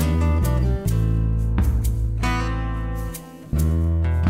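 Instrumental music: acoustic guitar strumming chords over a low bass line, briefly dropping away about three seconds in before coming back.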